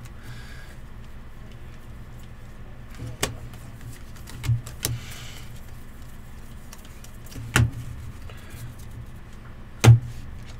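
Trading cards handled by hand: quiet slides of card against card and a few sharp little clicks as they are flipped. Near the end the stack is tapped down on the table with the loudest click. A low steady hum runs underneath.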